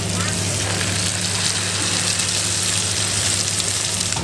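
Sandworm pancakes (chả rươi) frying in hot oil in a pan, a steady sizzle with a low hum underneath.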